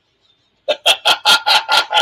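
A man laughing in a quick run of about eight short, evenly spaced bursts, starting about two-thirds of a second in after a brief silence.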